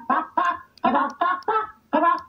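A voice making short, clucking calls over and over, about three a second.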